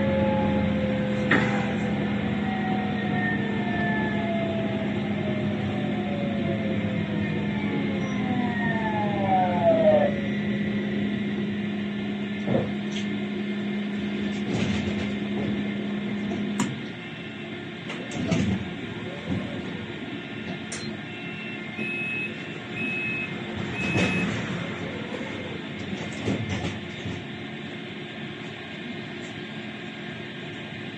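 Tram's electric traction motors whining down in pitch as it brakes to a halt, over a steady hum that cuts out about halfway through. After that the stopped tram is quieter, with scattered knocks and a few short high beeps.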